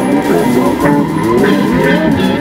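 Rock music: a band track with guitar, its notes sliding up and down in pitch over a steady accompaniment.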